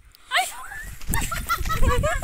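Puppy whimpering and yelping in short, repeated high cries, over a low rumble of wind and handling noise on the microphone from about halfway in.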